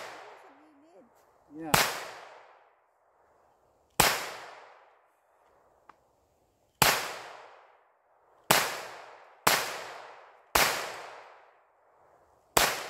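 Six single shots from a Taurus TX22 .22 LR pistol, fired at an uneven pace over about nine seconds. Each is a sharp crack trailing off in echo.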